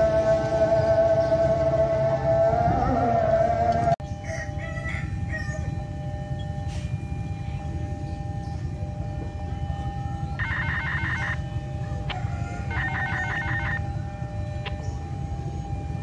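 Train horn sounding one long held note for about four seconds, cut off suddenly. After it, a quieter steady hum with two short trilling calls, about ten and thirteen seconds in.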